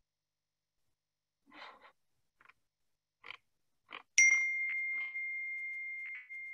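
Video-call notification chime: a single clear ding about four seconds in that rings on and fades slowly. A few faint, short sounds come before it.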